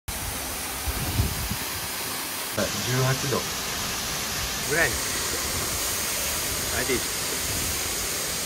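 Steady rushing of a waterfall pouring into a rock pool, with a man speaking briefly about three seconds in.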